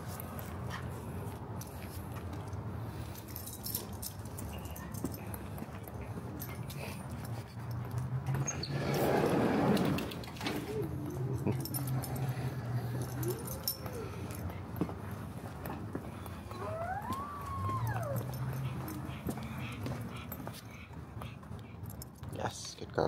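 A small dog whining, a few short whines that rise and fall in pitch in the second half, over a steady low outdoor hum. A louder brief rush of noise comes about nine seconds in.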